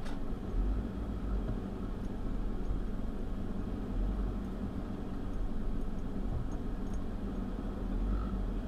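Steady cabin noise of a car driving at low speed: a low engine hum with the air-conditioning fan running, heard from inside the car.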